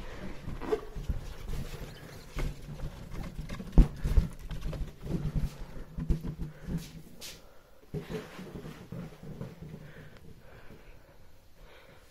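Handling noise from a phone being carried and brushed against balloons: rubbing and rustling with scattered knocks, the loudest a sharp thump about four seconds in, fading quieter toward the end.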